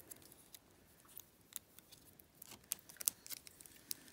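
Faint, irregular small clicks and crinkles from handling a plastic sheet of self-adhesive gem stickers and peeling the gems off it.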